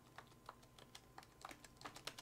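Faint, irregular key clicks of a braille notetaker's six-key braille keyboard being typed on, a few taps a second.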